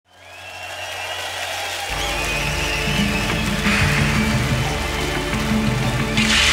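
Live rock band music fading in: sustained chords ring from the start, and about two seconds in a fast, even low bass pulse joins them.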